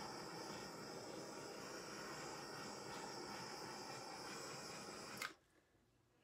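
Small handheld torch hissing steadily as it is played over wet acrylic paint to bring up cells, shut off with a click about five seconds in.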